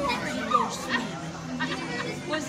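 People's voices: indistinct chatter and calling out, including a high, wavering voice, over a steady low hum.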